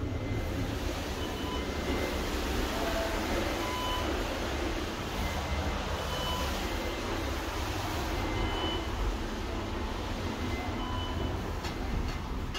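KONE MonoSpace machine-room-less traction elevator car travelling between floors, a steady rumble and hum of the ride, with faint short beeps about every two seconds.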